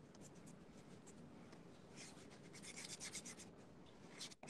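Faint scratching of a drawing tool on paper as a quick portrait is sketched. The strokes are sparse at first and come in quick runs in the second half.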